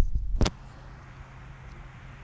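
Fingers rubbing over a phone's microphone, ending in a sharp click about half a second in. Then faint outdoor background noise with a low steady hum.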